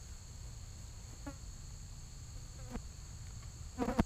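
A steady, high-pitched chorus of insects, with a low rumble of wind on the microphone. A few faint short calls come through, the loudest just before the end.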